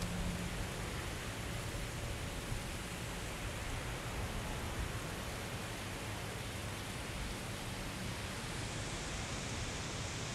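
Steady outdoor ambience: an even, constant hiss with no distinct events.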